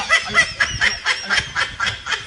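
High-pitched laughter: a quick, even run of short laughs.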